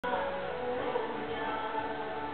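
Music with several voices singing together in held notes.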